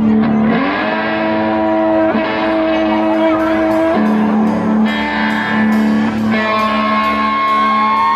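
Live band music with upright bass and hollow-body guitar, built around long held notes that slide up about half a second in and bend near the end.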